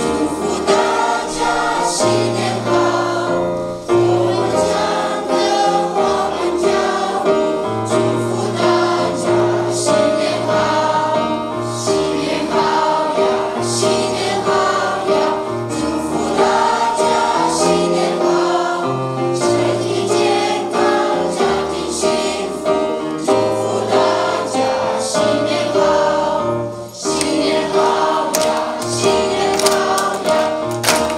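A large mixed group of children and adults singing together in Chinese, a song of good wishes to the audience, over steady low accompanying notes. Hand-clapping joins in near the end.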